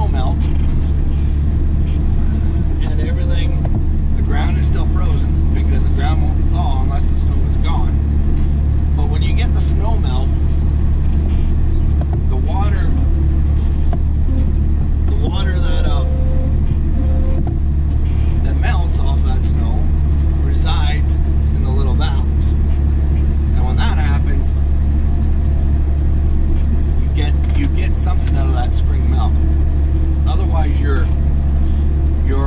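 Tractor engine running steadily under load, heard from inside the cab as a loud, unbroken low drone.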